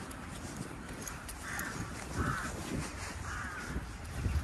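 A crow cawing three times, about a second apart, over a steady low outdoor rumble.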